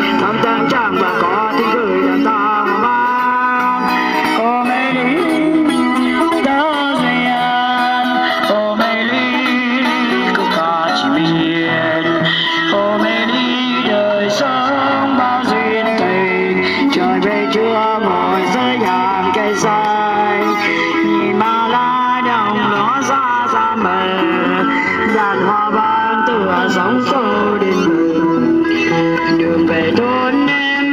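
Live street music: an amplified guitar played through a small practice amplifier, accompanying a woman singing into a microphone. It plays on steadily.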